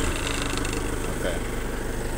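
Heli forklift's engine idling steadily, just after being started.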